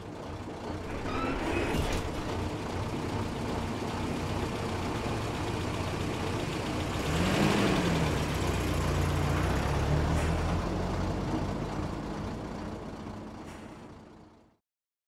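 Traffic noise: a steady rumble of road vehicles, with one passing loudest about seven to eight seconds in, fading out near the end.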